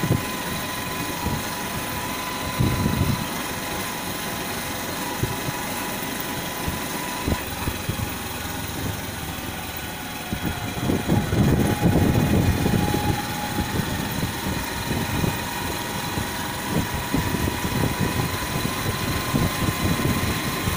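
Small motorcycle engine running at low road speed, with a thin steady whine over its hum. A low rumble swells briefly about three seconds in and again from about eleven to thirteen seconds in.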